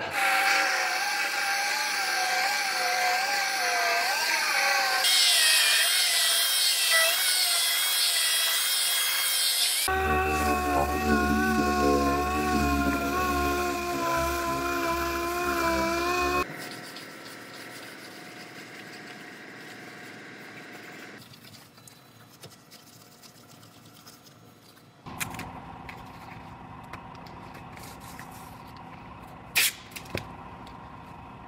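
Handheld power tool spinning an abrasive disc against the truck's roof seam, grinding off cured excess panel adhesive. Its pitch wavers as the load changes, and the sound jumps between several cuts. It is much quieter after about 16 seconds.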